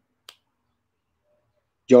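A single short, sharp click against near silence, then a man's voice starts speaking right at the end.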